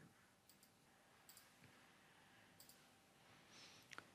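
Near silence with a few faint computer mouse clicks, about one every second or so.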